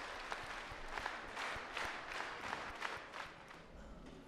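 Audience applauding, a dense patter of many hands clapping that thins out and dies away about three seconds in.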